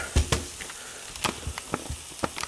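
Several light clicks and knocks at irregular spacing, the sound of handling in a kitchen, over a faint steady background.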